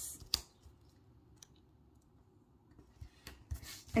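Vinyl planner sticker and paper pages handled by fingers: quiet rustling and pressing, with a short sharp click about a third of a second in and a few more clicks near the end.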